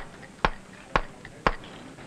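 A mason's mallet striking a steel chisel into a sandstone block: four sharp knocks at an even pace of about two a second.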